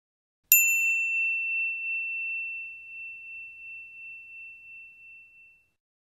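A single bright bell ding, the notification-bell sound effect of a subscribe-button animation, struck about half a second in and ringing on one high tone that slowly fades over about five seconds.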